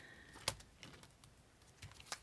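Light clicks and ticks of a cash binder's plastic zipper pouches being handled and flipped, with one sharper click about half a second in.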